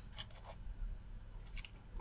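A few faint, short clicks as fingers handle a small FNB58 USB-C power meter: two early on and a pair near the end, over a low room hum.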